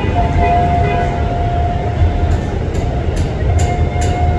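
Ex-JR 205 series electric commuter train approaching: a steady low rumble with a sustained tone over it. A regular light clicking, a couple of clicks a second, starts about halfway through.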